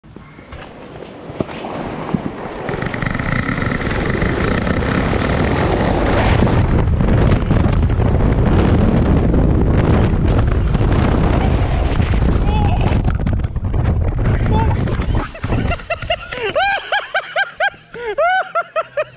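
Inflatable raft sliding fast down a ski jump: a loud, steady rushing rumble that builds over the first two seconds and eases after about fifteen. Near the end a rider laughs in short rising-and-falling bursts.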